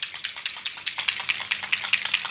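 A small bottle of metallic alcohol ink being shaken, its mixing ball rattling in fast, even clicks, about eight to ten a second.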